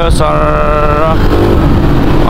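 A dirt bike's engine runs under a constant low rumble of riding noise. Over it, a voice holds one long sung note for about a second near the start.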